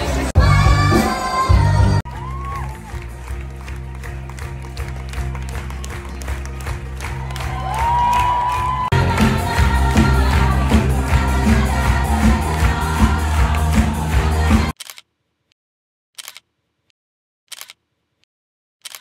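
Live stage-musical band and singers heard from the audience seats, with audience cheering and clapping over the music during the cast's curtain call. The sound cuts off abruptly near the end, leaving near silence with a few faint ticks.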